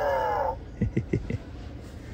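Electronic droid noise from a Star Wars Chopper (C1-10P) toy: an angry-sounding grumble that slides down in pitch and stops about half a second in, followed by a few faint clicks.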